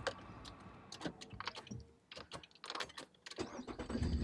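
Car keys clicking and jangling in the ignition as the car is switched off and restarted, then the engine starts with a low rumble about three and a half seconds in.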